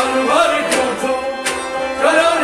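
Kashmiri Sufi devotional song performed live: singing over sustained harmonium and string accompaniment, with two sharp percussive accents about three-quarters of a second apart.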